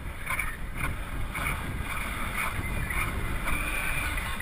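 Wind rushing over a rider-mounted camera's microphone and tyre rumble as a downhill mountain bike descends a paved street at speed, with a higher sound that flares up about twice a second.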